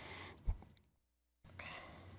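Faint breathing and movement noise at a podium microphone, with one low bump about half a second in. The sound drops out to dead silence for about half a second in the middle.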